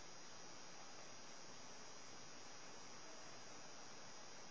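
Faint, steady hiss with a thin high-pitched whine and no other events: the background noise of the recording between announcements.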